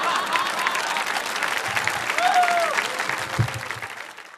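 Audience applauding, with a brief shout rising and falling in pitch about two seconds in. The clapping fades away near the end.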